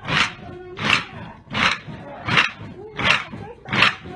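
A large column of marchers' feet stamping on a road in unison, a short noisy crunch about every 0.7 s in a steady cadence, with a faint murmur of voices between the stamps.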